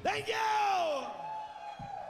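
A male rock singer's drawn-out yell through a PA microphone, jumping up in pitch and then sliding down over about a second, right after the band stops; a faint steady tone lingers afterwards and a single low thump comes near the end.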